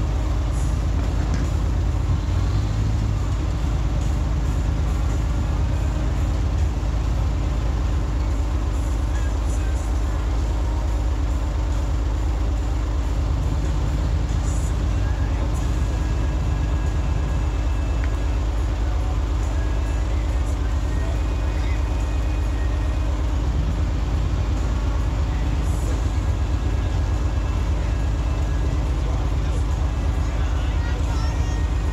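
Off-road vehicle engine running steadily at low revs, an even low drone.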